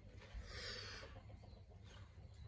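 Near quiet, with a faint chicken clucking briefly about half a second in.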